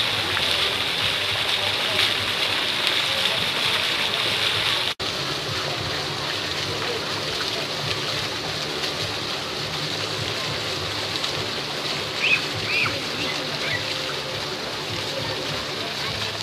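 Small fountain jets splashing into a shallow pool, a steady watery hiss, with people's voices murmuring in the background. The sound cuts out for an instant about five seconds in.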